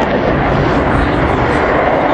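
F-16 fighter jet's engine noise, loud and steady with a deep rumble, as the jet climbs vertically.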